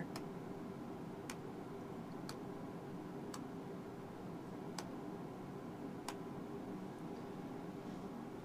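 A micro spark wheel struck again and again, about six sharp clicks roughly a second apart, throwing sparks into alcohol hand sanitizer gel to ignite it.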